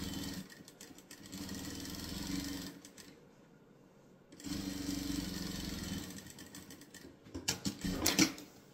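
Electric sewing machine stitching through layered cotton drill strips and a denim base in three short runs, with pauses between, the longest of them about three seconds in. A few light clicks near the end.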